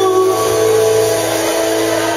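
Live band music: a male singer's long held note ends shortly after the start, and the band holds a sustained chord underneath.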